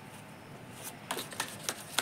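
A deck of tarot cards shuffled by hand: a run of short card clicks begins about a second in.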